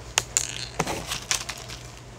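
Several sharp clicks and crackles of something being handled, spread through the two seconds, over a low steady hum.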